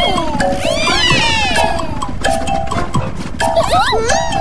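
Cartoon soundtrack: high sliding squeals and cries from animated characters over background music, the squeals thickest about a second in.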